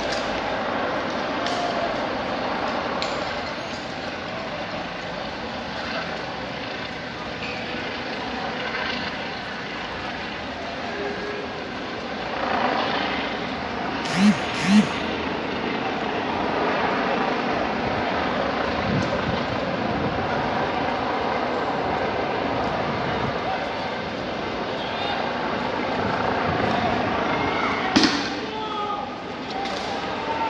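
Street noise of a protest with distant voices and shouts throughout. Two sharp, loud sounds come in quick succession about halfway through, and another comes shortly before the end.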